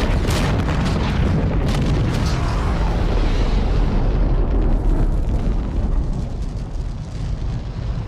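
A rocket exploding in flight: a sudden loud blast with crackling that settles into a long, deep rumble, slowly fading over the last few seconds.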